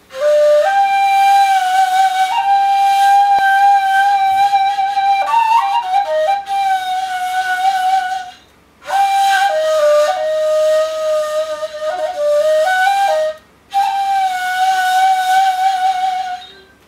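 Egyptian ney, an end-blown cane flute, played solo with an airy, breathy tone: a long held note that then steps between nearby notes, in three phrases with short breath pauses at about eight and a half and thirteen and a half seconds.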